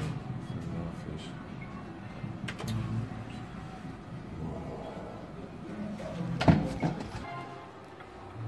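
A video slot machine playing its electronic game music and jingles while the reels spin, with a single sharp knock about six and a half seconds in.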